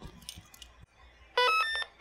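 Arduino-generated access-granted tone from an RFID door-lock demo. It is a quick run of buzzy beeps, each a step higher in pitch than the last, about a second and a half in, and it signals that a scanned RFID tag has been accepted.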